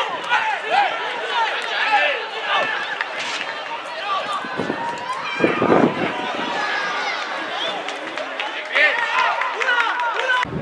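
Football players and spectators shouting and calling on an outdoor pitch, several voices overlapping with no clear words. A louder surge comes a little past halfway.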